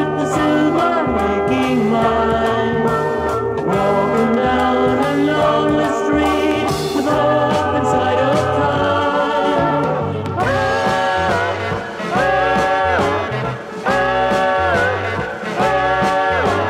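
1970s rock band playing a passage with no sung words, with a stepping low line under layered melodic parts. From about ten seconds in, a short phrase repeats about every second and a half, each one sliding up at its start.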